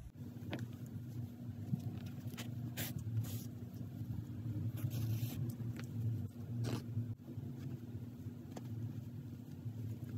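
Faint rustling and brushing of hands working a crocheted yarn piece, a handful of brief scuffs, over a steady low hum.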